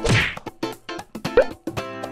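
Outro background music of rhythmic strummed plucked strings, with a sudden whack-like hit right at the start and a shorter accent about a second and a half in.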